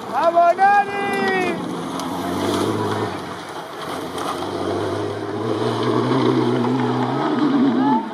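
A loud shouted call near the start, then a rally car's engine approaching from a distance, growing louder and varying in pitch toward the end, over spectators' chatter.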